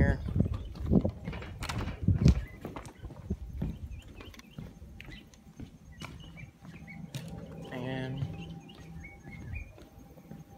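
Footsteps on hollow wooden dock boards, heaviest in the first couple of seconds and then lighter. A short voice is heard about eight seconds in.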